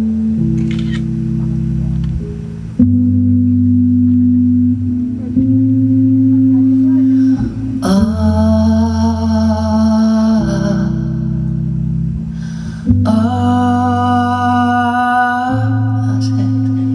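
Live band music: sustained low keyboard chords that step to a new pitch every two to three seconds, with a long held higher tone about eight seconds in and another about thirteen seconds in.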